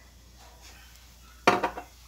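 Quiet kitchen, then a short clatter of cookware about one and a half seconds in.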